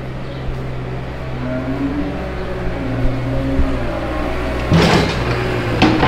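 Diesel engine of a Cat compact wheel loader running, its pitch rising and falling as it works the straw pack. A louder burst of noise comes in near the end.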